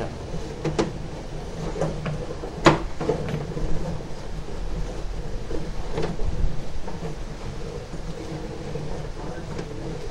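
Sewer inspection camera's push cable being hauled back through the pipe and fed onto its reel: a steady rumble with a few sharp clicks, the loudest a little under 3 s in.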